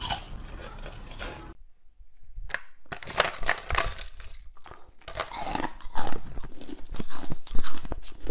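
Close-up crunching and chewing of ice in the mouth. There are crackly bites at first, then, after a short pause about two seconds in, rapid crunching of mouthfuls of soft pink ice that grows loudest near the end.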